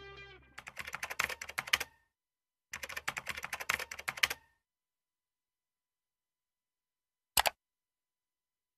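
Rapid keyboard typing clicks in two runs of about a second and a half each, then a pause and a single click near the end. A held music chord fades out in the first half-second.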